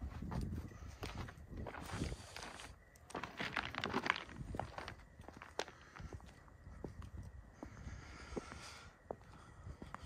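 Faint, uneven footsteps of a person walking on asphalt.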